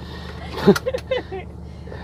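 Steady low drone of a car-transporter truck's engine and road noise heard inside the cab while driving, with brief faint voice sounds near the middle.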